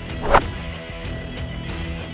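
A single sharp swish-and-hit fight sound effect for a blow, about a third of a second in, over steady background music.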